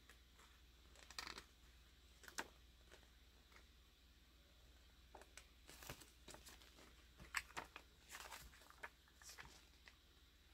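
Faint, brief rustles and crinkles of glossy comic book pages being turned by hand, several short flicks spread through an otherwise near-silent stretch.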